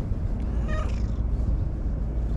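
An orange-and-white cat gives one short meow about half a second in, over a steady low rumble.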